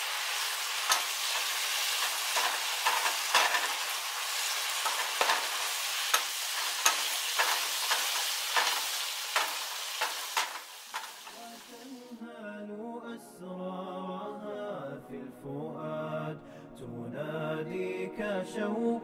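Ground beef sizzling in a nonstick frying pan, with a wooden spoon stirring and clicking against the pan. About twelve seconds in, the sizzling stops and an unaccompanied vocal nasheed begins.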